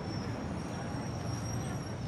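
Steady hum of distant city road traffic, a low rumble with a thin high steady tone above it.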